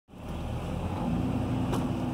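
Steady motor-vehicle running noise, a low engine and road rumble with a faint steady hum.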